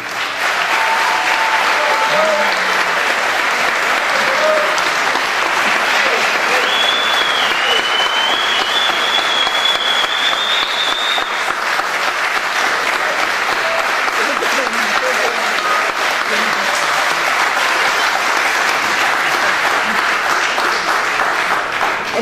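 Audience applauding steadily at the end of a live accordion piece, with scattered voices among the clapping. A long high whistle, slowly rising in pitch, cuts through the clapping for several seconds a little before the middle.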